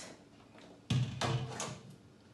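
A glass fridge shelf knocks against a stainless steel sink about a second in. The knock is sudden and rings on briefly before fading.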